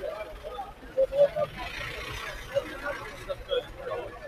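Busy outdoor market hubbub: several people talking over one another, with street traffic in the background.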